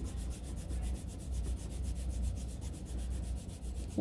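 Soft 6B graphite pencil shading on paper, held at an angle and rubbed in rapid, overlapping back-and-forth strokes under hard to medium pressure.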